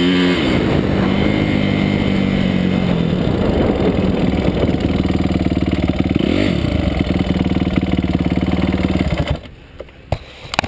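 Dirt bike engine running steadily at low speed, with two brief throttle blips whose pitch rises and falls, one at the start and one about six seconds in. About nine seconds in the engine cuts off suddenly, leaving a few faint clicks.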